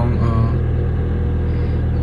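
A car's engine idling, heard from inside the cabin as a steady low hum.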